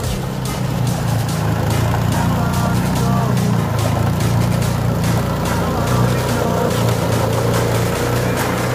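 Walk-behind petrol snowblower engine running steadily under load as the machine clears snow, with a constant low drone.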